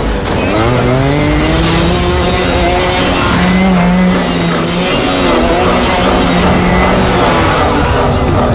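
Action-film sound mix dominated by a motorcycle engine revving, its pitch rising and falling, with skidding amid a dense bed of effects.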